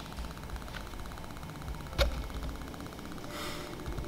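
Low background noise with a faint fast, even buzz, and a single sharp click about halfway through.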